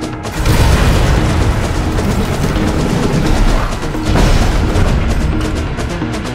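Loud orchestral film-score music with heavy booms. It surges suddenly about half a second in and again about four seconds in.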